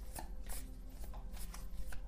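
Tarot deck being shuffled by hand: a run of soft, irregular card clicks and rustles.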